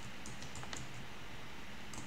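Computer keyboard being typed on: a few light, irregularly spaced keystrokes as a word is entered.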